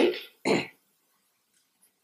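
A woman gives one short cough about half a second in, right after finishing a spoken word.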